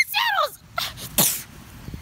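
A child's high-pitched wordless yell falling in pitch, then about a second later a short, sharp breathy burst from the child's mouth and nose.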